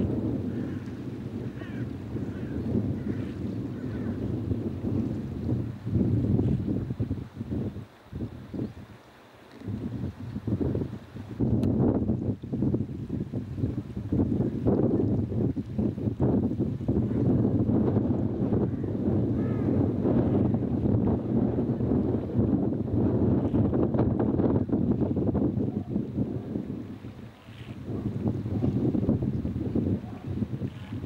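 Wind buffeting the microphone outdoors, rising and falling in gusts, with brief lulls about eight seconds in and shortly before the end. A low steady hum runs underneath.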